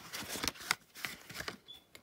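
Rustling and small clicks as a coin proof set's hard plastic case is slid out of its cardboard sleeve and handled, dying away near the end.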